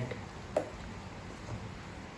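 Faint handling noise from a cardboard smartphone box being turned in the hands, with one short sharp click about half a second in.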